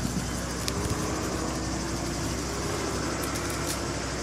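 A tractor engine running steadily to drive a crop sprayer's pump feeding a hose, with a steady hiss over it.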